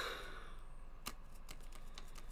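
Faint, scattered clicks of computer keys, one sharper keystroke about a second in followed by several lighter ones.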